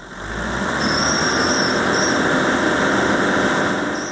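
Steady street noise with a car engine running, and a thin high-pitched whine for about a second, starting about a second in.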